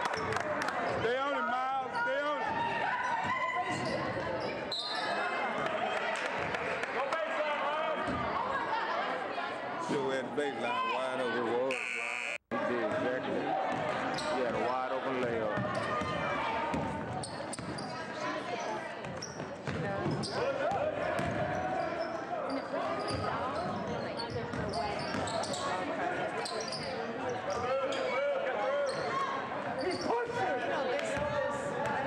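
Basketball bouncing on a hardwood gym floor amid overlapping voices and shouts from players and spectators, echoing in a large gym. The sound drops out briefly about twelve seconds in.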